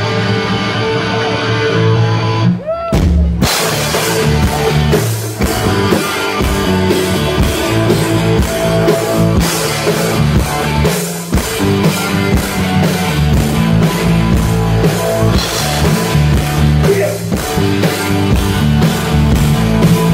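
Live hard rock band playing loud: for about the first three seconds the electric guitars sound on their own, then the drum kit and bass come in with a steady beat.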